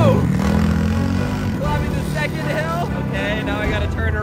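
Small engine of a mini Jeep Wrangler go-kart running steadily as it drives over grass, with a person's voice over it.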